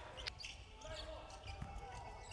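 Basketball bouncing on a hardwood court, faint under the arena's background noise, with a sharp knock about a quarter second in.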